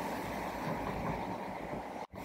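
A steady, even rushing background noise with no speech, cut in and out abruptly at edits.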